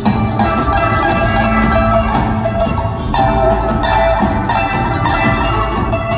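Live rock band playing an instrumental passage, with electric guitar, upright bass, drums and harp, heard from the audience in a theatre.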